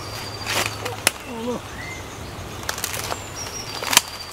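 Leaves and branches rustling and twigs cracking as people push through dense jungle undergrowth, with scattered sharp snaps, the loudest just before the end.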